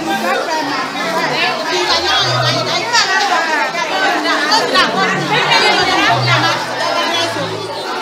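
Many voices talking at once in a crowded room, over background music with a low bass line.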